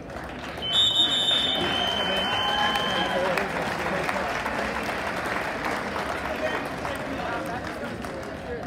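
A referee's whistle blows one long, steady blast lasting a couple of seconds, starting just under a second in, signalling the pin that ends the wrestling bout. A crowd cheers, shouts and applauds: it swells sharply with the whistle and slowly dies down.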